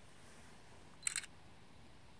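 A camera shutter fires once, a quick click-clack about a second in, over faint steady background hiss.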